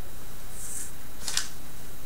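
Two brief handling sounds at a desk, a short soft rustle and then a sharp click or rustle about a second and a half in, over a steady low room hum.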